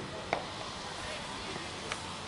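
A single sharp knock of a cricket ball meeting the bat about a third of a second in, over a steady open-field hiss with faint distant voices.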